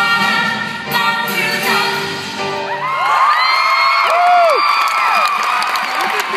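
A song with group singing plays for about three seconds, then breaks off into an audience cheering and whooping, with many high shrieks rising and falling over each other.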